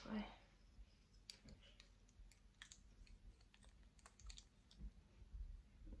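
Faint, scattered small clicks from a large plastic hair clip being opened and fitted over a rolled curl to hold it while it sets.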